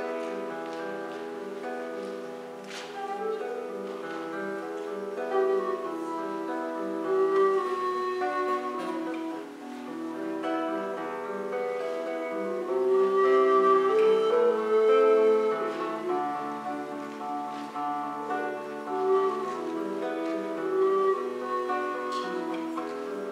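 Acoustic guitar, violin and recorder playing a traditional Irish tune together, with the recorder and violin carrying sustained melody notes over the plucked guitar.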